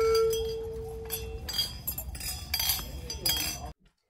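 Hanging metal decorative bells knocked together: one rings with a single steady tone that fades after about a second and a half, followed by a run of short metallic clinks. The sound cuts off suddenly near the end.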